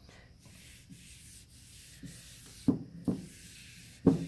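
A gloved hand rubbing polyurethane over a sanded wooden board, a steady hissing rub. Two short sharp knocks come a little under a second apart near the end.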